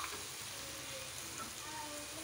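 Raw shrimp, green mussels and seafood balls frying in a hot pan with a steady sizzle, turned over with a wooden spatula.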